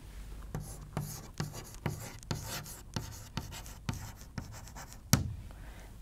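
Chalk on a blackboard while drawing and writing: a run of short taps and scraping strokes, about two a second, with a sharper tap about five seconds in.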